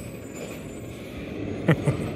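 New Way Sidewinder side-loading garbage truck's engine running steadily, a low rumble from down the street. Near the end, two short falling-pitch voice sounds cut in.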